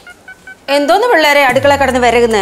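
A quick run of faint, short electronic beeps at different pitches, then a child's high voice speaking loudly from just under a second in.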